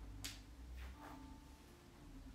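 Quiet room with a faint steady hum and two soft, brief rustles, one near the start and a fainter one about a second in, as a person shifts from hands-and-knees to kneeling on a yoga mat.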